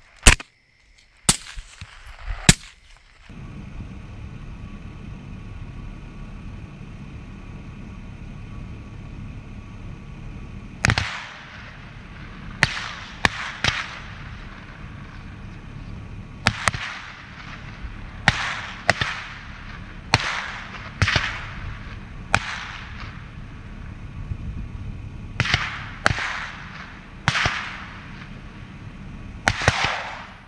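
Rifle shots fired at feral hogs in quick strings: three sharp shots in the first few seconds, then after a pause about fifteen more, often two or three close together, each trailing off in an echo. A steady low hum runs under the later shots.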